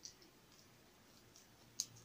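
Faint clicks and crackles of a cooked shrimp's shell being peeled apart by hand, one sharp click at the start and a louder one near the end.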